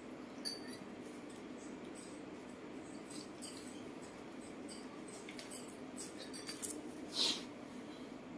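A macaque sipping water through a plastic straw: faint small clicks and a brief hissing slurp about seven seconds in, over a low steady room hum.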